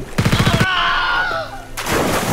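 Short burst of automatic gunfire, rapid evenly spaced shots for about half a second, followed by a man's drawn-out cry and one more sharp bang near the end.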